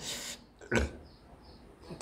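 A person's breath, then one short snort-like nasal sound under a second in.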